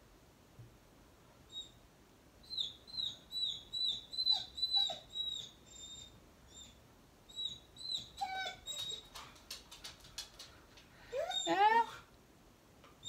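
A pet dog whining in short, high-pitched squeaks, several a second, in runs, with a louder, longer whine rising in pitch near the end. A few light clicks sound in between.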